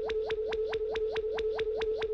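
Synthesized flying-saucer sound effect: a steady electronic hum with quick rising blips repeating about six times a second.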